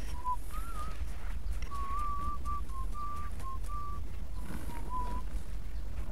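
A person whistling a slow tune in short, wavering phrases, with a steady low rumble underneath.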